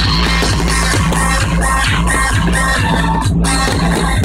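Loud electronic dance music over a big sound system, with a heavy bass line and a steady beat, and a shouted vocal 'fucking' from the track's 'put your hands up' chant at the start.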